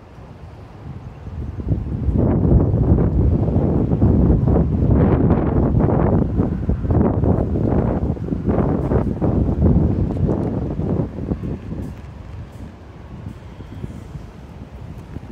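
Wind buffeting the microphone in gusts, rising sharply about two seconds in and easing off near the end.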